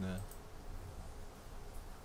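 Faint computer mouse clicks over quiet room tone with a low steady hum, after a single short spoken word at the very start.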